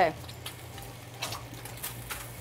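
Eggs frying in a skillet on a gas range: a soft, steady sizzle over a low kitchen hum. There are a couple of short clicks from the pan in the second half as it is jerked to flip the eggs.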